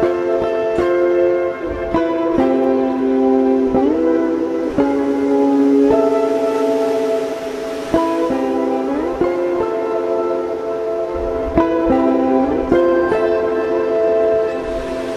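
Guitar playing a slow melody of long, ringing notes, with several notes slid up into pitch.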